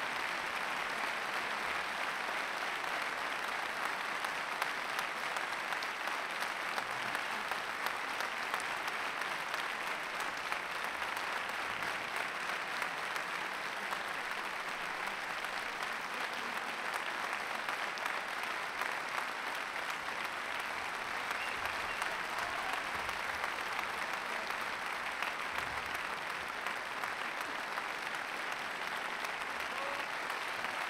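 A large concert-hall audience applauding steadily after a performance: a dense, even wash of many hands clapping that holds at the same level throughout.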